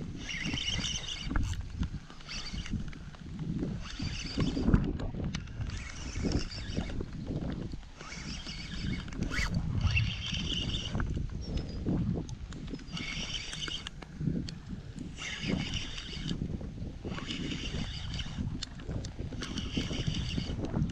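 Fishing reel being worked in repeated short bursts every second or two, its gears whirring, while a hooked alligator gar pulls on the line. Wind buffets the microphone, with low knocks of handling in the boat.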